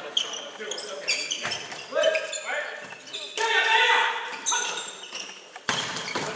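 Volleyball players' shoes squeaking on the sports hall floor as they move through a rally, mixed with players' shouted calls, in a reverberant gym. A single sharp smack of the ball comes near the end.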